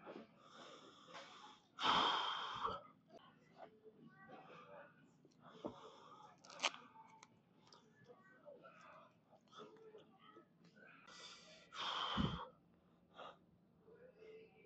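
Two hard, forceful breaths about 2 s in and again near the end, each lasting about a second, as the lifter braces before a heavy barbell squat. Faint rustling and small clicks of gear being handled come between them.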